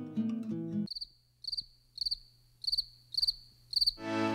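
Plucked acoustic guitar notes end about a second in. Then a cricket chirps, short pulsed chirps on one high pitch repeating about twice a second.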